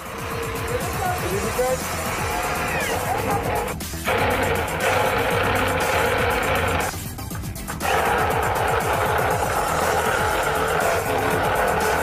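Electric drill boring holes through the top of a plastic barrel, running in three stretches with short stops about four and seven seconds in.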